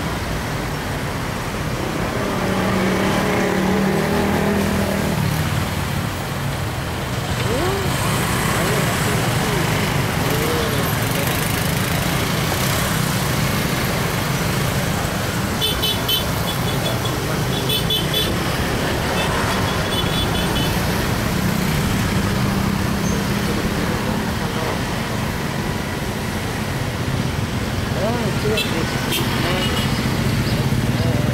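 Dense road traffic of cars and motorcycles heard from right among it: a steady mix of engine drone and road noise. Short, high, repeated beeps come in about the middle.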